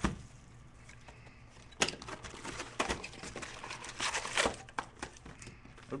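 Trading-card box and pack wrappers being handled and opened: scattered crinkles and clicks, sparse at first and busier in the middle.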